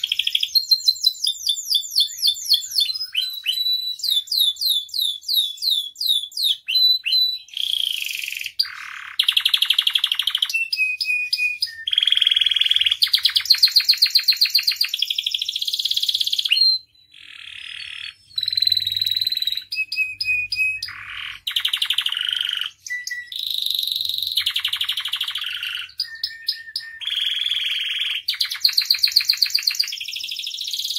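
Domestic canary singing continuously: rapid runs of repeated notes give way to long buzzing trills, phrase after phrase, with one brief pause a little past halfway.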